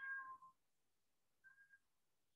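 A street cat meowing faintly twice, asking for food: a half-second meow, then a shorter, fainter one about a second and a half later.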